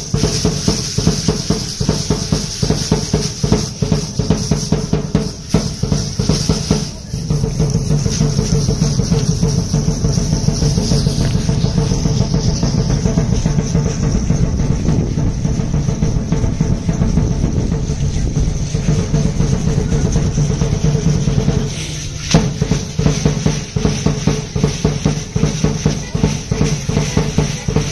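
Fast, steady drumming for a danza troupe's dance. The beat breaks off briefly about seven seconds in and again near twenty-two seconds.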